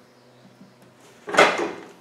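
A quiet stretch, then one sudden knock with a rustle about one and a half seconds in that fades within half a second: handling noise from the camera being moved.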